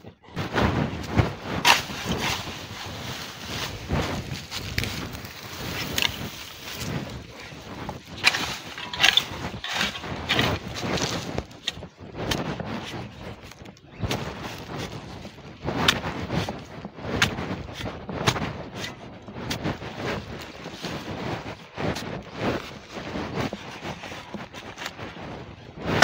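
Spade blade chopping and scraping into dry, hard-packed soil in irregular repeated strikes while a planting hole is dug, with clods breaking loose.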